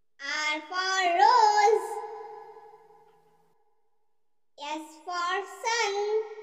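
A child's voice singing two short alphabet-chant phrases, 'R for rose' just after the start and 'S for sun' about four and a half seconds in, with a pause of about two seconds between them.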